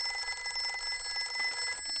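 Cartoon telephone ringing: a steady, fast-trilling electronic ring that cuts off near the end as the phone is picked up.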